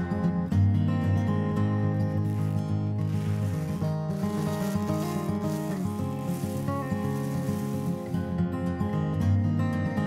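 Background acoustic guitar music, with a rustling hiss over it for about five seconds in the middle.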